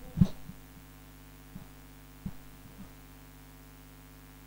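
Steady electrical hum from the microphone and sound system, with a few soft, short low thumps from a handheld microphone being handled.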